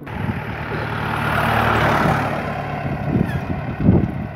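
Motor vehicle engine running on the road, heard under wind and road noise. The noise swells to its loudest about two seconds in, then eases off.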